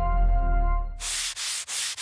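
The last chord of a TV station ident jingle ringing out and fading. About a second in, a quick run of short hissing swish sound effects, three or four in a row with brief gaps.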